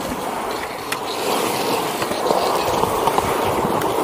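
Skateboard wheels rolling on a concrete bowl: a steady rolling roar with a couple of faint clicks.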